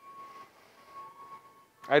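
Faint background noise of a large store with a thin, steady whine, then a man's voice begins near the end.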